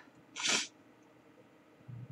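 A single short, sharp sniff through the nose about half a second in, followed by quiet room tone.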